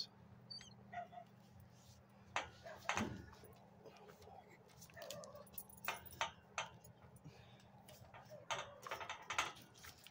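A man laughs briefly a couple of seconds in, then faint, scattered short sounds come and go over a low steady hum.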